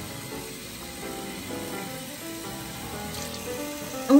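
Tap water running in a steady hiss while a face is rinsed, with background music playing over it.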